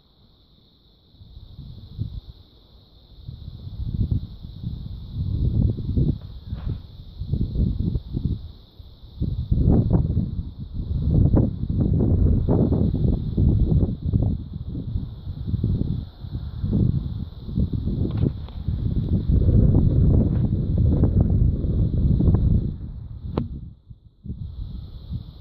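Wind buffeting the microphone in irregular low gusts that swell and fade every second or so, louder after the first few seconds, with a steady high hiss behind it.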